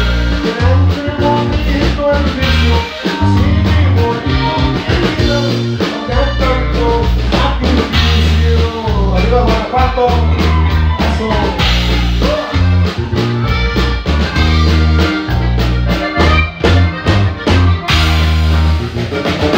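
Live norteño band playing a corrido through a PA: button accordion carrying the melody over guitar, drum kit and strong bass notes.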